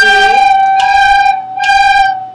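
A group of classroom recorders playing the same note, G, in unison three times in a row, each note held just under a second.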